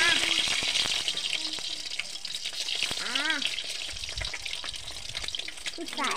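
Peeled boiled eggs sizzling as they fry in hot oil in a steel kadhai, more eggs going in. The sizzle is loudest at the start and slowly eases off.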